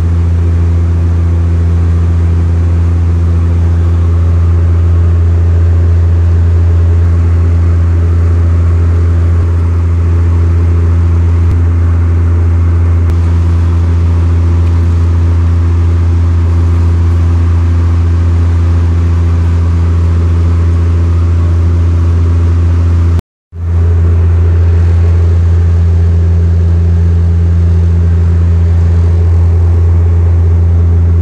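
Airliner engines droning steadily, heard inside the passenger cabin in flight: a loud, even low hum with a few steady tones above it. The sound drops out for an instant about two-thirds of the way through.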